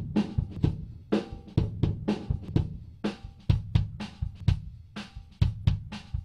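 Close-miked kick drum recording, taken with an AKG D112 inside the drum, playing back a repeating beat. A wide EQ band around 300 Hz is first boosted and then cut, taking out the boxy mid-range typical of close-miking a kick for a tighter sound.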